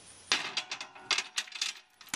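A rusty iron ball and chain being handled and set down, its chain links clinking and rattling in a quick run of sharp metallic strikes that start about a third of a second in.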